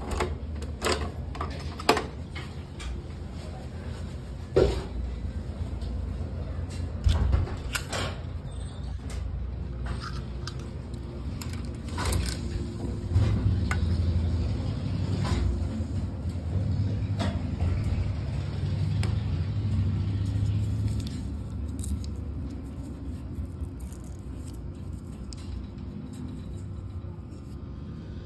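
Coin-operated capsule vending machines being worked by hand: scattered sharp clicks and metallic clanks from the chrome crank handle and the metal parts of the machines, over a steady low rumble.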